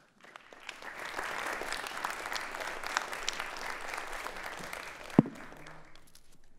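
A room of people applauding: the clapping swells up within about a second, holds steady, then tapers off near the end. A single sharp knock stands out about five seconds in.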